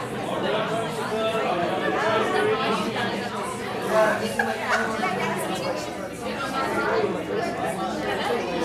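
Several people talking at once: indistinct chatter with no single voice standing out.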